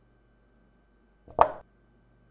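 Chess-move sound effect: a single short click as a piece is set down on the board, about one and a half seconds in, over a faint steady hum.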